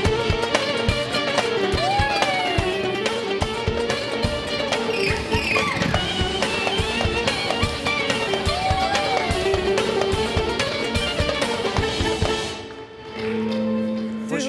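Upbeat studio music with a steady beat, cutting out about a second before the end.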